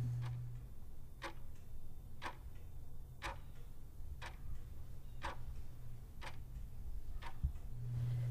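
A clock ticking softly and evenly, one tick a second, eight ticks in all, over a faint low hum.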